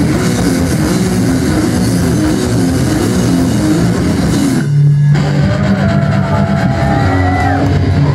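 Punk band playing live: loud distorted electric guitars, bass and drums. About halfway through the band breaks off for a moment over a held low note, then the guitars come back in with sliding notes.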